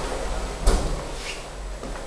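A single sharp knock about two-thirds of a second in, with a fainter one near the end, over a low rumble of handling noise from a handheld camera being walked through a room.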